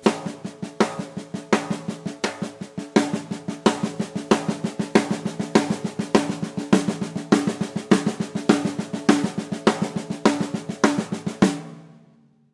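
Snare drum struck rapidly with the left hand alone in steady, even strokes, a loud accented rim shot on the first of every four notes and quiet notes between. It is a fast endurance workout played at the drummer's top tempo, and it stops shortly before the end.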